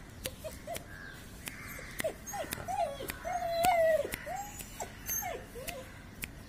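A beagle whining in a run of short whimpers that rise and fall in pitch, with one longer, louder whine just past the middle. Sharp little clicks sound throughout.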